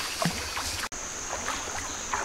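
Bare feet wading through a shallow stream, water sloshing and splashing with each step. About a second in the sound breaks off for an instant, and a steady high-pitched tone comes in under the splashing.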